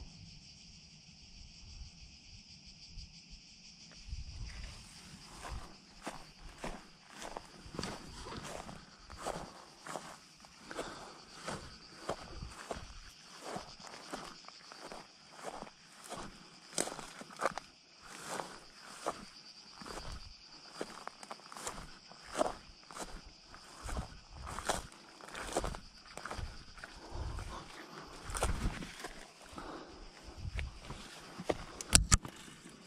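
Footsteps of a person walking over dry grass and loose limestone rubble, at a steady walking pace starting about four seconds in, over a steady high-pitched hum.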